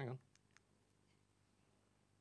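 Near silence with two faint clicks about half a second in, a button being pressed on the presentation controls.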